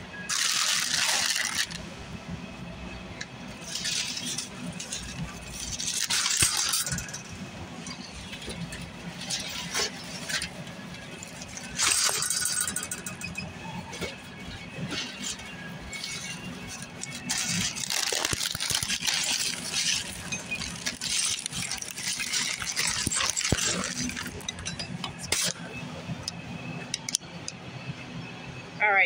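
Shrink-wrapped 24-packs of plastic water bottles being lifted and set into a metal shopping cart: crinkling plastic wrap with bottles knocking and rattling, in several separate bursts over a steady low hum.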